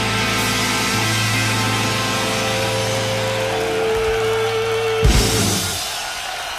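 Blues-rock band holding its final chord on electric guitar over drums as the song ends. The chord is cut off by a last crash on the drums about five seconds in, which then rings out.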